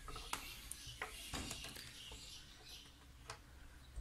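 Faint handling sounds: a few light clicks and rustles as a small relay and multimeter test probes are picked up and fitted together.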